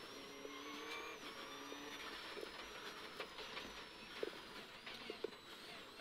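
Subaru Impreza rally car's turbocharged flat-four engine running at speed, heard from inside the cabin, its pitch shifting up and down as the car drives the stage.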